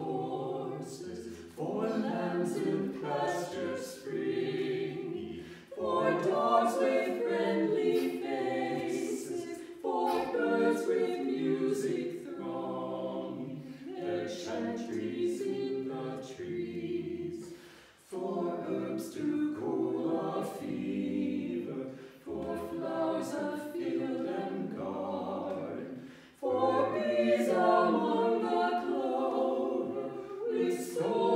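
A small choir of four voices, men and women, singing a hymn unaccompanied, in phrases with brief breaks between them.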